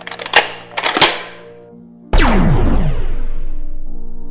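Two sharp clicks in the first second, like a gun being cocked, then about two seconds in a loud cartoon-style gun blast whose pitch drops steeply before it fades away.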